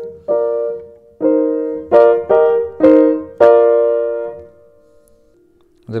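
1905 Bechstein Model 8 upright piano played: six struck chords in the middle register, the last held and left to die away. The tone is mellow because the hammers are worn; they need refacing to bring back the brightness.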